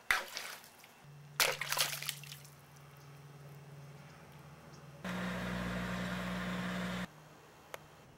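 Water splashing as a small pumpkin drops into a plastic bowl of water: a sharp splash at the start and a second, longer splash about a second and a half in. Later a steady hiss with a low hum lasts about two seconds and cuts off suddenly.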